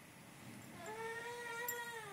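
A house cat giving one long, drawn-out meow about a second in, holding its pitch and then dropping at the end.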